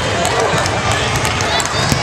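Gym hall sound between volleyball rallies: players and spectators talking and calling. A few short sneaker squeaks on the hardwood floor come near the end.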